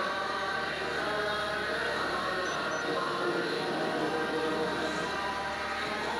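A choir singing with music, steady and continuous: the national anthem, played while the officers stand at the salute.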